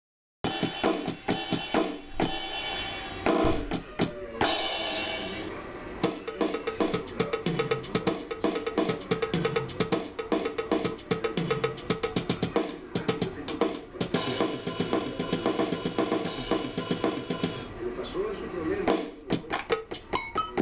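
Yamaha DD-6 electronic drum pad sounding its built-in sampled drum kit: a fast, busy stream of snare, bass drum and cymbal hits. A few seconds past the middle a steady cymbal-like hiss holds for about four seconds.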